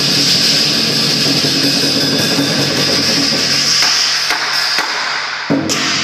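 Chinese lion dance percussion: a drum beaten loudly under a steady wash of clashing cymbals. In the last couple of seconds single drum beats stand out more sharply.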